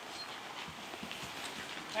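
Faint, irregular thuds of a horse's hooves at a walk on soft dirt-and-shavings arena footing.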